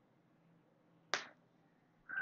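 A single sharp click about a second in, dying away quickly, over faint background hiss.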